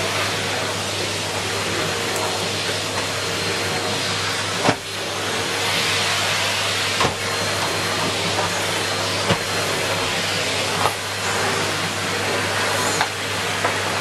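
Numatic International (NRV-200) bagged cylinder vacuum cleaner running steadily while its floor tool is pushed back and forth over carpet. A few brief knocks sound over the motor's steady noise.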